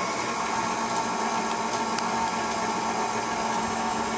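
Electric mixer running steadily on low, whisking cupcake batter of sugar, oil, egg whites and lemonade concentrate, with a constant motor hum. One brief tick about halfway through.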